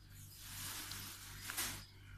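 Faint soft rustling of doubled cotton yarn and fingers handling a crochet piece and metal hook, with one short louder swish about a second and a half in.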